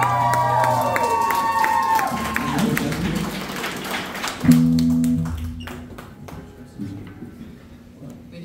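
Live band's electric guitar and bass ringing out on a final held chord, fading away over the first few seconds. About four and a half seconds in, a short low bass note sounds, then it drops to scattered light noise.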